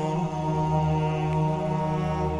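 Background music under the closing slides: a slow chant-like drone of long held notes that shift pitch only slowly.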